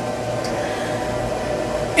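Steady room noise: an even hiss with a low, constant hum underneath.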